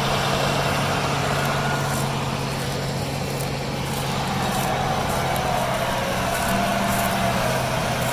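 John Deere track tractor's diesel engine running steadily as the tractor moves slowly past close by. A fainter higher whine joins in over the last few seconds.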